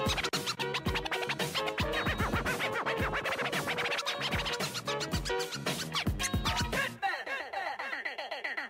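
DJ turntable scratching, a record worked back and forth against the mixer's crossfader, over a hip-hop beat with a heavy kick drum. About a second before the end the beat drops out, leaving only the rapid scratched sample.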